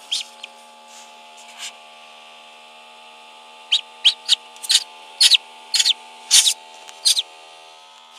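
Duckling peeping: a run of about eight short, high peeps in the second half, with one more near the start, over a steady hum.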